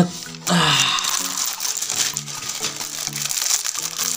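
Wrapping crinkling in the hands as a wallet is unwrapped, with background music playing.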